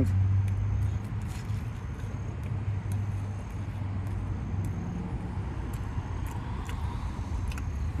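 Steady low hum of a running car heard inside the cabin, with scattered soft clicks of someone chewing food.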